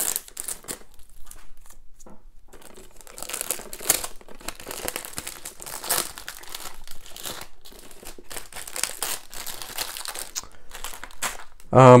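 Plastic shrink-wrap being torn and peeled off a cardboard box set. It crinkles in irregular bursts as it is pulled away and handled.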